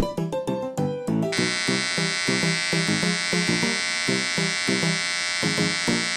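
Electric hair clippers buzzing steadily, starting about a second in, over background music with a plucked, bouncy rhythm.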